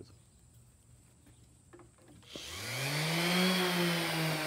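Electric random orbital sander with 120-grit paper switched on about halfway in. Its motor whine rises quickly in pitch, then settles into a steady run with a loud hiss.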